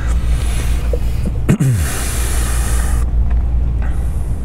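A steady low rumble, with hissing rustle over it for most of the first three seconds and a short low tone sliding downward about one and a half seconds in.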